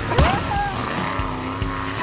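Monster truck engine running, with a sharp knock just after the start.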